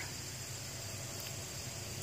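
Quiet outdoor ambience: a steady high-pitched insect chorus over a faint low rumble, with no distinct calls or events.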